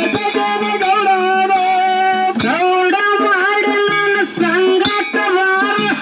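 A woman singing a Kannada dollina pada folk song in long, wavering held notes, over drum and small hand-cymbal accompaniment.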